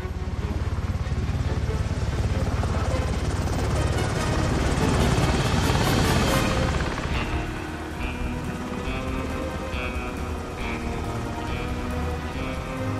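Helicopter rotors beating fast, growing louder to a peak about six seconds in and then fading. Film score music with sustained chords comes up in the second half.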